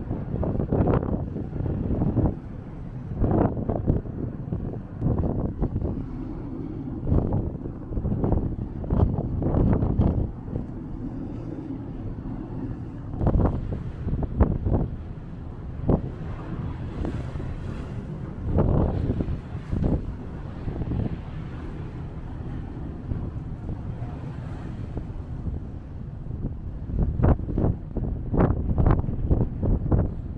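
Wind buffeting the microphone in irregular gusts on the open deck of a moving ferry, over a steady low rumble of the ship underway.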